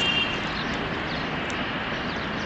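Steady rushing outdoor background noise with no clear events, and a few faint thin high tones in the first half-second.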